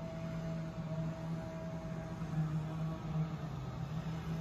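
A steady low machine hum, with a fainter higher tone that comes and goes.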